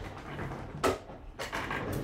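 Handling knocks as a small manual die-cutting machine is picked up and brought over: one sharp click a little under a second in, then a couple of quieter knocks.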